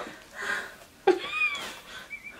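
A single short high-pitched cry about a second in, its pitch rising and then falling.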